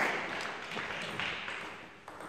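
Applause from a small crowd of spectators fading out over about two seconds. A single sharp tap sounds right at the start.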